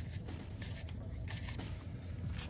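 Paper playing cards sliding and flicking against one another as a booster pack is sorted by hand: a few soft, short card swishes over a steady low hum.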